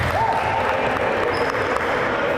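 Reverberant basketball-hall noise just after a score: players' voices, a short rising call near the start, and scattered movement on the court.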